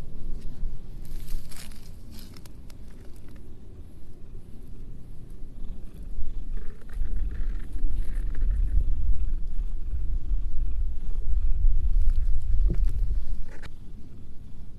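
Domestic cat purring close to the microphone while being brushed, a low rumble that swells from about halfway through and stops just before the end. Scratchy rustles of brush strokes and dry grass come in the first few seconds.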